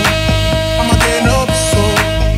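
Club dance music from a nonstop DJ mix, with a steady kick-drum beat, a sharp hit about once a second and a held synth note.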